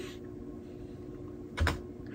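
A couple of keystrokes on a computer keyboard, the loudest about one and a half seconds in, over a faint steady hum.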